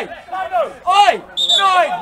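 Men's raised voices shouting over each other in a heated argument, with a short high whistle-like tone just after the middle.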